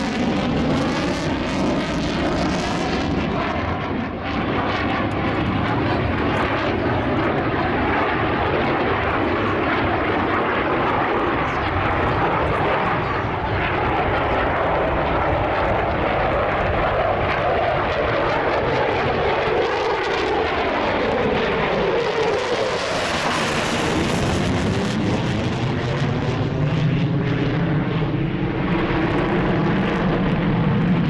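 F-15 Eagle fighter jet's twin turbofan engines, loud and continuous as the jet manoeuvres overhead. About two-thirds of the way through the sound sweeps and swirls in pitch and turns brighter as the jet turns and passes closest.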